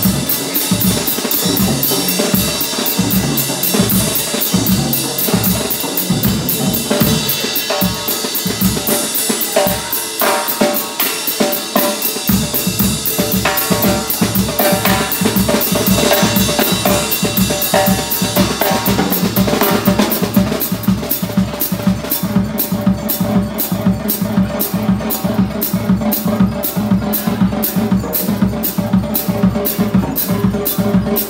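Drum kit solo: fast rolls and fills across snare, toms and cymbals, driven by the bass drum. About twelve seconds in a deep low part fills in under the drums, and in the last third the playing settles into an even, rapid pulse.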